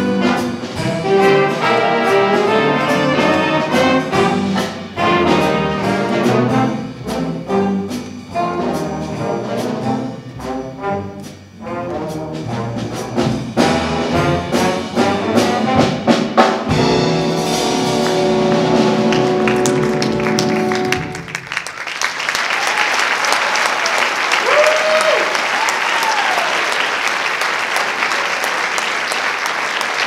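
A school jazz big band of trumpets, trombones, saxophones and rhythm section playing, ending on a long held chord that cuts off about 21 seconds in. The audience then applauds and cheers.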